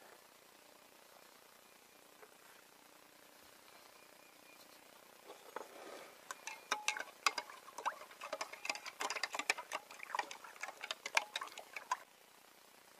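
Quiet for the first few seconds, then a spoon stirring and clinking in a glass jar of Epsom salt solution: a long run of quick irregular clicks and taps, some with a short ring, to dissolve the salt.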